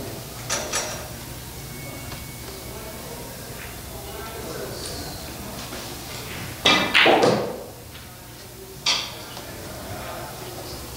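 A pool shot on a 9-ball table: the cue strikes the cue ball and is quickly followed by hard clacks of ball on ball, with the object ball dropping into the corner pocket. About two seconds later comes a single sharp knock. There is a low murmur of the hall behind it, and two light clicks near the start.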